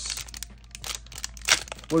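Crinkling and rustling of foil trading-card booster pack wrappers and cards being handled, in irregular bursts with a sharper crinkle about one and a half seconds in.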